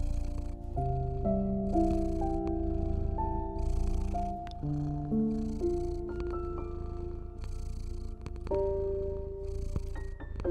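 A cat purring steadily, a low rumble with a breathy swell about every second and a half, under a slow, soft piano melody of held notes.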